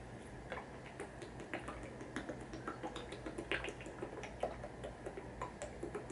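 Drinking from a large thin-walled plastic water bottle: faint, irregular clicks and crackles from the plastic as it flexes in the hand.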